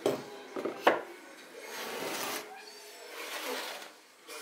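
A wooden cutting board handled on a wooden tabletop: two sharp knocks as it is set down, then two longer scraping slides of wood over wood.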